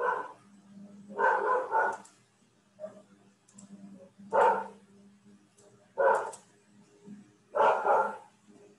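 A dog barking repeatedly, about six short barks a second or more apart, some in quick pairs, picked up over a video-call microphone.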